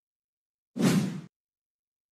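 A single short whoosh sound effect about a second in, lasting about half a second: a broadcast transition between news stories.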